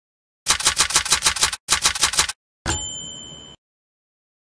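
Typewriter sound effect: two quick runs of keys clacking, then a single carriage-return bell ding that rings briefly and cuts off.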